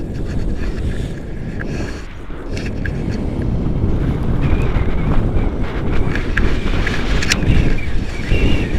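Wind buffeting the microphone of a camera carried through the air on a selfie stick in paraglider flight: a loud, low, noisy rush that grows stronger over the second half.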